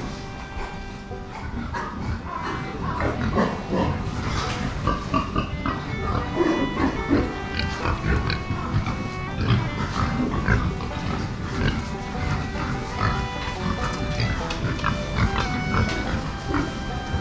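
Berkshire (kurobuta) fattening pigs grunting and moving about in their pens, under background music with held notes.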